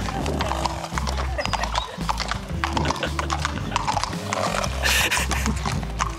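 A horse's hooves clip-clopping at a walk on asphalt, over background music with a repeating bass beat. A short rush of noise comes about five seconds in.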